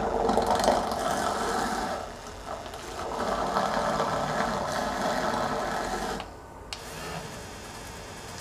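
Electric makeup brush spinner running, spinning a brush in its glass bowl to spin it clean and dry. The motor sound sags briefly about two seconds in. The louder spinning stops about six seconds in, leaving a fainter whir.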